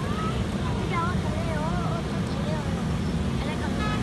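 Steady rumble of road traffic on a nearby bridge, with high voices calling faintly over it and a brief vehicle horn near the end.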